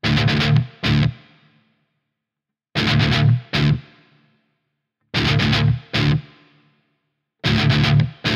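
Distorted electric guitar playing a stop-start rhythm: four quick down-up strums, then one single hit, then silence. The figure comes three times, with a fourth starting near the end.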